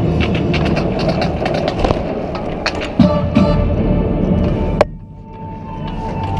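Marching band playing its field show, with many sharp hits through the music. Near the end a loud hit cuts the sound off sharply, leaving a softer held note that swells back up.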